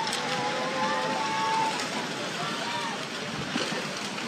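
Tsunami floodwater and debris rushing through a town, a continuous noisy rush, with people shouting long, drawn-out calls over it.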